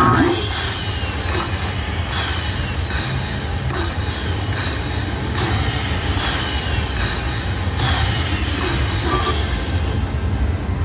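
Slot machine tallying a bonus win. A burst of sound at the start, then a short falling chime repeats about every two-thirds of a second as the win amount counts up, over the steady hum of a casino floor.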